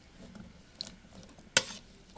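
A metal spoon stirring a wet chickpea mixture in a bowl: soft scraping with a few light clicks, then one sharp knock of the spoon against the bowl about one and a half seconds in.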